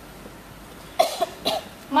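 A person coughing twice, two short coughs about half a second apart, starting about a second in after a moment of quiet room tone.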